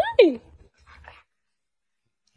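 A dog gives one short whine that falls quickly in pitch, right after a woman's high-pitched "Hi!" at the very start; after that, near silence.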